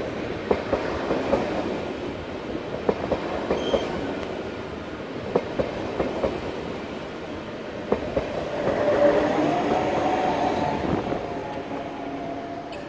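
Double-deck Intercity 2 coaches rolling slowly past, their wheels clicking irregularly over rail joints and points. From about eight and a half seconds in, a loud squeal of several steady tones joins the rolling as the arriving train brakes and its electric locomotive draws level.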